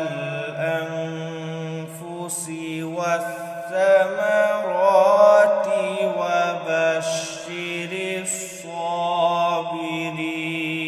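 A male Quran reciter chanting in the melodic qirat style, holding long ornamented notes whose pitch bends and wavers, with barely a break.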